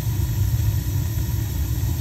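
Burnham gas boiler firing: its burners run with a steady low rumble. The burner is staying lit, a sign that the fix to its flame sensing rod has worked.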